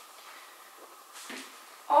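Quiet room tone with a faint, brief rustle a little over a second in as a person turns over on an exercise mat; a woman's voice starts right at the end.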